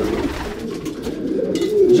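Racing pigeons cooing in the loft: low, wavering calls throughout, with a short rustle near the end.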